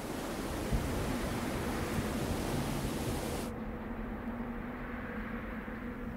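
Steady wind noise, a rushing hiss. About three and a half seconds in it turns abruptly duller and a little quieter, as the high hiss drops away.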